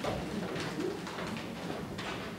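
Footsteps on wooden stage steps, a few soft knocks, with faint low murmuring underneath.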